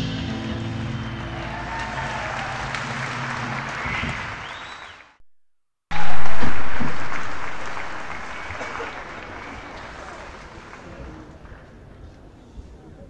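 Audience applauding and cheering after the band's last chord of a song rings out. The recording drops out for under a second about five seconds in, then the applause comes back loud and slowly fades.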